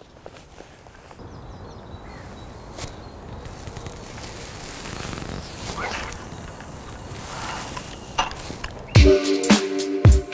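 A carp rod being cast: a soft swish of rod and line over outdoor noise, loudest about halfway through. Music with a strong beat cuts in about a second before the end.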